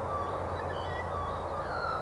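Birds chirping in short, scattered calls over a steady low hum from an approaching diesel locomotive.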